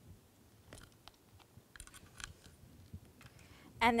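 Faint scattered clicks and small knocks of wire leads and clip connectors being handled on a bench circuit board, a few at a time over the few seconds.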